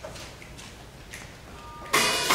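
Quiet hall with a few faint clicks and a brief ringing tone, then the percussion ensemble's first loud stroke of the piece, with mallet instruments and drums, right at the end.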